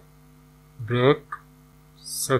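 A steady low electrical hum under a voice recording, with one short spoken word about a second in.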